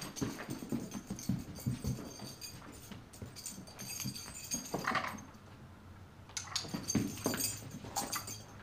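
A large dog moving about on a rubber-matted floor, its paws padding softly and its collar tags jingling in short bursts, with louder moments about five and seven seconds in.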